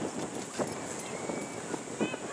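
Outdoor ambience at a soccer game: a steady background hiss and rumble, with faint distant voices calling across the field.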